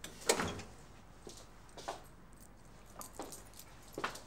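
Clothes being handled in a hurry: fabric rustling and a few short clatters, the loudest about a third of a second in, then smaller ones near two and three seconds.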